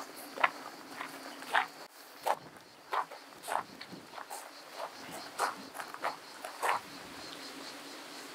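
Footsteps crunching on a gravel path, roughly one step every half second to second, stopping near the end. A steady high-pitched insect buzz carries on underneath.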